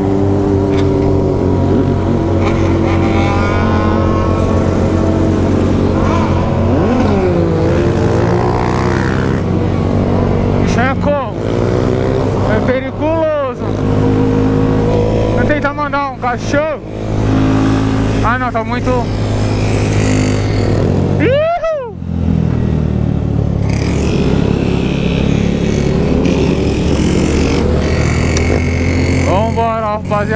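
Honda CG 160-series motorcycle's single-cylinder engine running at road speed, with several quick rises and falls in engine pitch through the middle.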